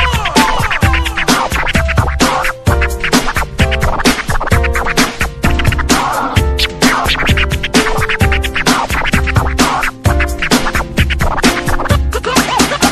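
DJ dance remix of Filipino pop music with a steady, driving kick drum beat and short stabbing chords, overlaid with turntable scratch effects. The beat briefly drops out twice, about two and a half seconds in and near ten seconds.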